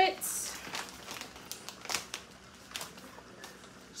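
A plastic bag being handled: quiet crinkling and rustling, with a few light clicks.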